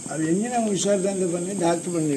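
A person's voice talking, with some vowels drawn out, in words the recogniser did not write down.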